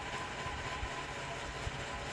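Steady background noise: a low rumble with a faint, even high hum underneath, and no distinct handling sounds standing out.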